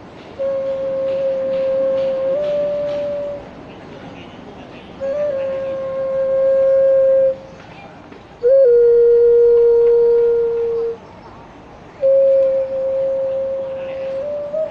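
Xun, a Chinese clay vessel flute, played in slow, long held notes near one pitch: four sustained phrases of two to three seconds each, the first stepping up slightly near its end and the third starting with a short bend a little lower.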